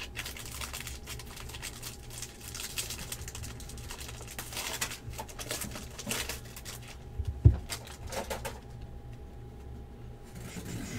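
Wrapper of a Bowman Draft jumbo trading-card pack crinkling and tearing as it is ripped open by hand, in a dense run of crackles. A single dull thump comes past the middle, followed by lighter rustling as the cards are pulled out.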